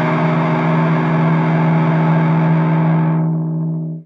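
David Thomas McNaught Vintage Double Cut electric guitar with humbucking pickups, played through a Fat Rat distortion pedal into a 1963 Vox AC30: one overdriven chord left to ring steadily. Its treble fades near the end, then the sound cuts off.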